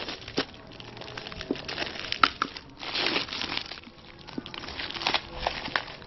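Packing tape, cardboard and plastic wrapping of a parcel being torn and crinkled by hand, in irregular crackling rustles.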